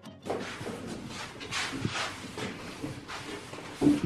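Handling noise and footsteps as a white particleboard shelf unit is carried by hand, with light knocks and a louder thump near the end.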